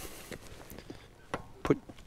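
Low background noise with a few faint knocks about a second and a half in, and one spoken word near the end.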